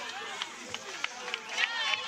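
Spectators cheering and shouting at an outdoor competition, with a few sharp knocks and a high-pitched shout near the end.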